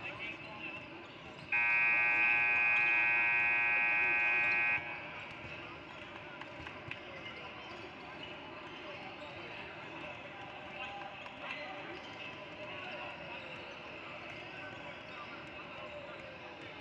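Gym scoreboard horn sounding one loud, steady blast of about three seconds, starting a second and a half in. Around it, basketballs bounce on the hardwood court over the chatter of the gym.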